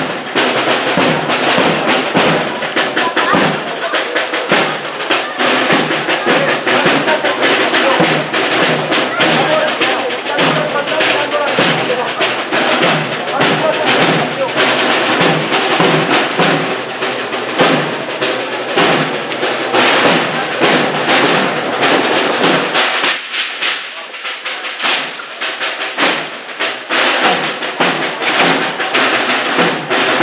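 Processional band music with drums: a Holy Week march played in the street behind the float, easing off briefly about two-thirds of the way through before coming back up.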